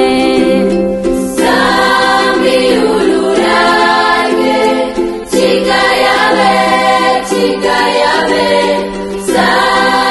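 A youth choir singing a Malagasy song in phrases a few seconds long, each broken by a brief pause, over a steady sustained low note.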